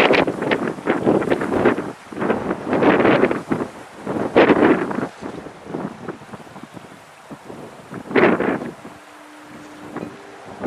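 Wind buffeting the microphone in irregular loud gusts. It eases off in the second half, apart from one more gust near the end.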